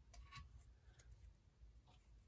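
Near silence: a few faint ticks of cardstock and paper strips being handled.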